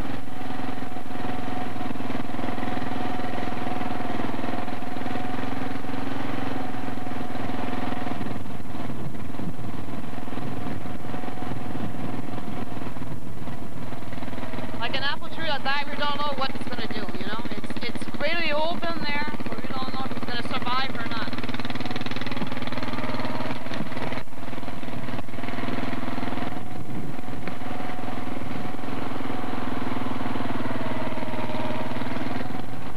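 Car engine and road noise heard from inside the cabin while driving, a steady drone throughout. Indistinct voices come through briefly in the middle.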